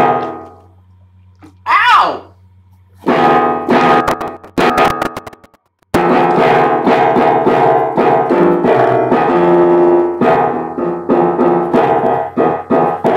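Piano playing: a few struck chords that die away, then, after some clicks about five seconds in, a steady run of notes. A brief wavering sliding tone sounds about two seconds in, and a low steady hum runs underneath.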